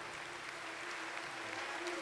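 Faint sustained keyboard note held steady over a low, even hiss of room noise.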